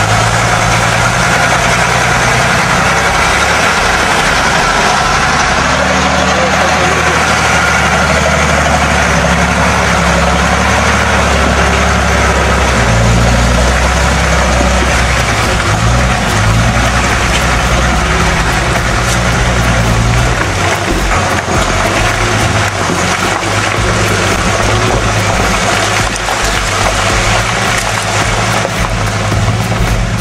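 Engine of an old firewood-laden truck running hard under load as its wheels churn through deep mud, the engine note rising and falling.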